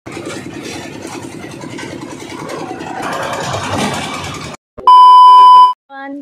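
A concrete mixer's engine running steadily for about four and a half seconds, with a change in the sound about three seconds in. After a brief gap comes a loud, steady single-tone beep lasting under a second.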